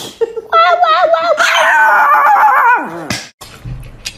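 Chihuahua howling: a loud, wavering, high-pitched call lasting about two seconds that ends in a falling glide.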